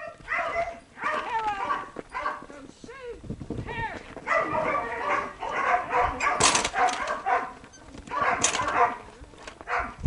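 A dog barking and yipping in repeated short, high-pitched bursts while running.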